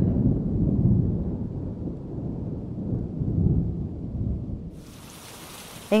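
Low rolling rumble of thunder that slowly fades, then a steady hiss of rain comes in near the end.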